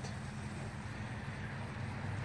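Steady low rumble of outdoor background noise, with a faint hiss over it.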